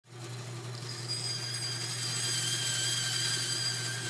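An electric motor-driven machine running steadily: a low hum under several high, steady whining tones, growing louder over the first two seconds.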